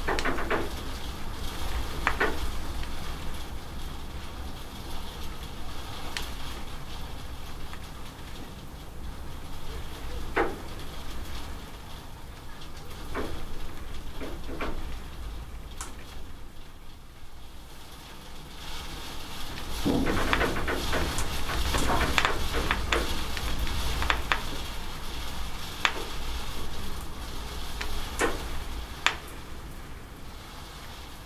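Steady rain with water running off a corrugated roof edge, single drops and splashes standing out now and then. The rain swells louder for several seconds about two-thirds of the way through, then eases again.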